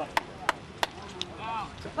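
Hands clapping in a steady rhythm, about three claps a second, four claps that stop a little past a second in, followed by a faint shout.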